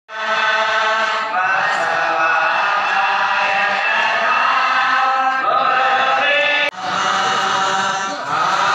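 Male voices chanting a prayer together in long held notes, the pitch shifting about a second in and again past five seconds. The chant breaks off abruptly near the end and starts again.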